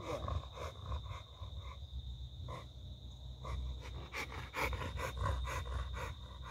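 Bully-breed dog panting rapidly, about three or four quick breaths a second.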